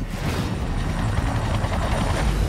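Helicopter in flight: a steady, loud, noisy rumble heavy in the low end.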